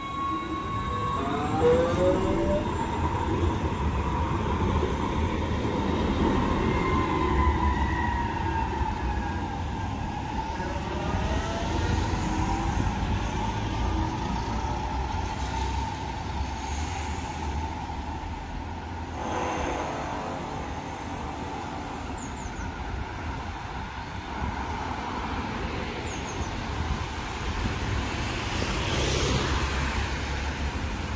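Tram pulling away and running on street track: the electric traction motors' whine rises in pitch as it speeds up, over a steady rumble of wheels on the rails. The motor whine climbs again about ten seconds in.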